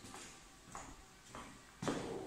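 Faint footsteps on a tile floor, about three steps, in a quiet room, with a louder rustling noise near the end.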